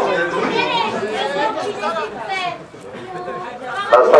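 Spectators' chatter close to the microphone: several voices talking, easing off briefly about three seconds in.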